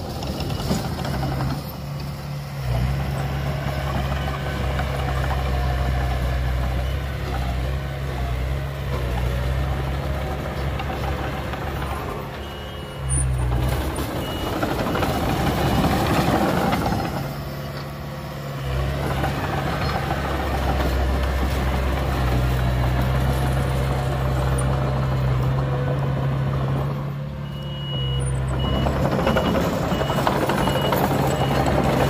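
Komatsu D20P small crawler bulldozer's diesel engine running steadily while it works soil, growing louder under load for a few seconds midway and again near the end. A reversing alarm beeps about once a second in the last few seconds.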